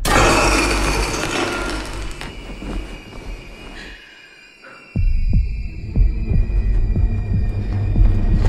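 Suspense trailer sound design: a loud noisy swell that fades over about four seconds under a held high tone, a brief lull, then a sudden deep hit about five seconds in, followed by a low drone with pulsing low thumps like a heartbeat.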